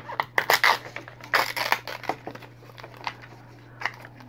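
Small printed plastic wrapper being torn open and crinkled by hand to free a miniature collectible, in a few short tearing rustles with light clicks of plastic.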